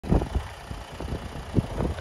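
Wind buffeting an outdoor microphone: an uneven, gusty low rumble.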